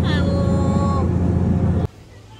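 Steady low engine drone of a Tom Sawyer Island raft, with a short high voice sliding down at the start; the drone cuts off abruptly near the end.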